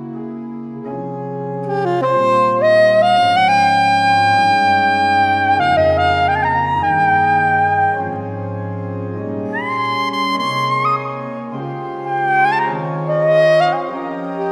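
Organ and saxophone duet: the organ holds sustained chords that shift every second or two, and the saxophone enters about two seconds in with long held notes that step upward, slides in pitch near the middle, and plays short rising phrases near the end.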